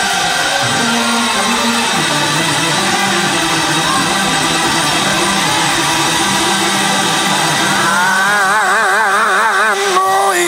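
Live gospel music from a church choir and band, sustained chords played and sung. About eight seconds in, one long held note with a wide vibrato comes to the front.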